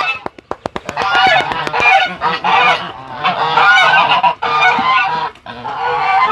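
A flock of white domestic geese honking continuously, many calls overlapping. A quick run of sharp clicks comes in the first second.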